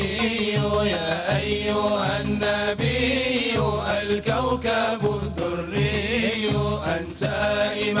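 A male soloist singing an Arabic devotional chant (inshad), with the ensemble's low held voices beneath him.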